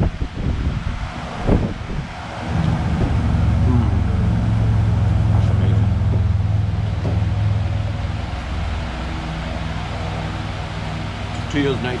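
Low rumble of a passing road vehicle, swelling a few seconds in and slowly dying away, over a few soft knocks at the start.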